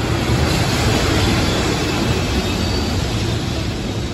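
EF210 electric freight locomotive hauling a six-car Tokyu 5080 series train past a station platform, a steady rumble of wheels on rails with a brief faint high tone about two-thirds of the way through.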